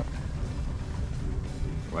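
Background music with a low bass line.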